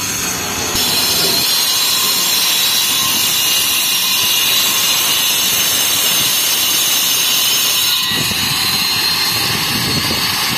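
Handheld angle grinder cutting through a precast concrete kerb stone: a loud, steady, high-pitched grinding whine that starts about a second in.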